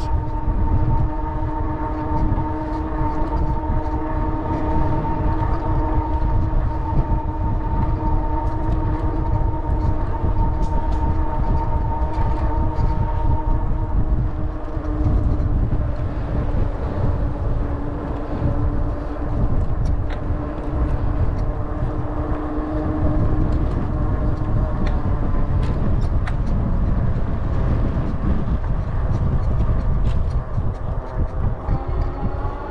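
Wind rushing over the microphone of a moving bike, with a steady whine of several tones over the first half. The highest tone drops out about halfway through and the lowest soon after.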